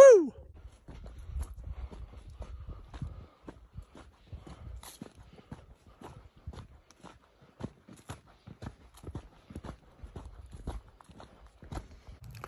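A short falling cry right at the start, then footsteps on dry, stony ground and grass: irregular light crunches and taps, a few each second.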